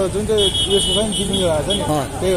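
Street traffic heard from a moving scooter: voices talk over a low engine rumble, and a high steady tone sounds for about a second shortly after the start.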